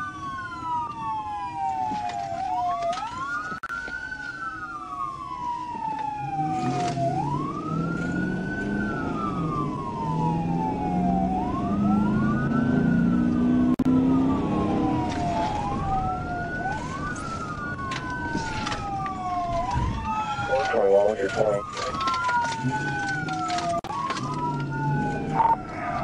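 Police car siren on wail, sweeping slowly up and down about every four and a half seconds, with a second wail running slightly out of step. Engine and road noise run underneath.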